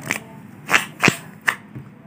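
A deck of ordinary playing cards being handled on a wooden table: four short, sharp card snaps and slides, spread through about a second and a half.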